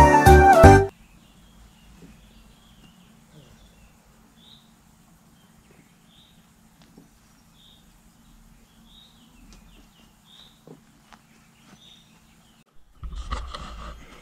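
Background music that cuts off about a second in, followed by quiet outdoor ambience with faint bird chirps, a few light ticks and a low hum. A burst of rustling handling noise comes near the end.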